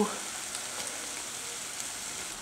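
Zucchini, onion, carrot and tomato stewing with rice in a pot over low heat, sizzling steadily.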